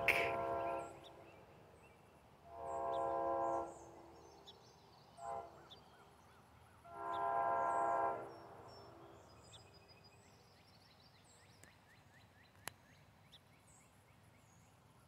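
Faint locomotive horn of an approaching train sounding the grade-crossing signal: the tail of one long blast, then a long, a short and a long blast. Small birds chirp between blasts.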